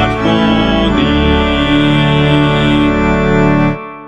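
Electronic keyboard playing held organ-voice chords of a hymn tune, the chord changing about a second in. The chord is released near the end and dies away.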